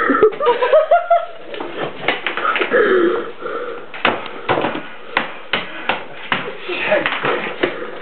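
Repeated knocks and clatter of household items being shoved and lifted while rummaging through clutter, mixed with short wordless voice sounds.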